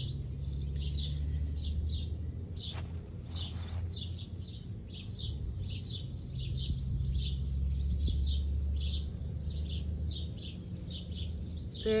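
A small bird chirping over and over, about three short high chirps a second, over a low steady hum that swells and fades.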